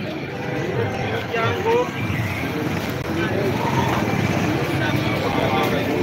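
Busy street-market ambience: several people talking in the background over the running of a motor vehicle.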